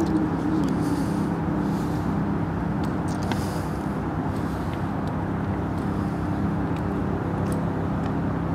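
Steady motor-traffic noise with a constant low engine drone that holds one pitch throughout.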